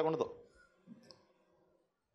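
The last words of a man's amplified speech, then a pause that falls to near silence, with a faint click about a second in.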